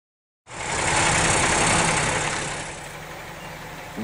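Heavy semi truck's diesel engine running with a steady low hum, starting suddenly about half a second in. A loud rushing noise lies over it at first and dies down after about two seconds, leaving the engine quieter.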